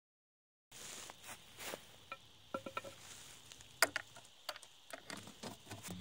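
Faint, scattered light clicks and taps of a flat steel sewer rod being fed into a PVC leach-field pipe in a concrete distribution box. They follow a moment of dead silence at the start.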